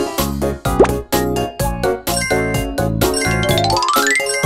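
Upbeat children's cartoon music with a steady beat. A quick upward glide comes about a second in, and a rising run of chiming notes comes near the end.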